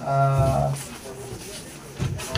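A man's voice through a microphone holding one drawn-out, level-pitched hum or vowel for under a second, like a hesitation while reading from a sheet, then only faint room sound.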